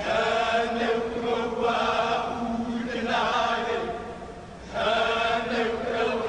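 Men's voices chanting a Hawaiian chant in unison, holding long notes on a steady pitch. The chant pauses briefly about four seconds in, then starts the next phrase.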